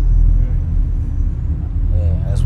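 A steady, deep low drone made of several low tones held without a break or beat.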